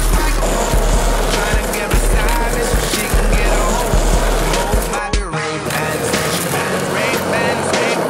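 Skateboard wheels rolling on asphalt, a low rumble with regular clacks, under music with singing. The rumble drops away a little over five seconds in.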